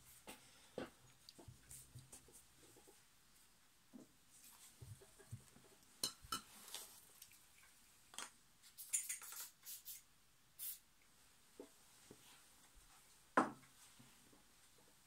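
Sporadic light clicks and taps of small sewing-machine handwheel parts being handled on a workbench. A cluster of clicks comes a little past the middle, and a single sharper knock comes near the end.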